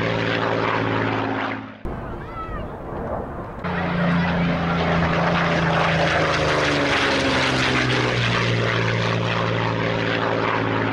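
Propeller aircraft engine drone with a strong low hum. Just under two seconds in it drops away for a couple of seconds, leaving a few faint rising chirps. Then the engine sound comes back, its pitch drifting slowly.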